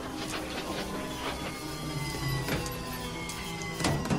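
Film soundtrack under the commentary: music with held low tones, a thin whine slowly falling in pitch, and a few scattered clicks.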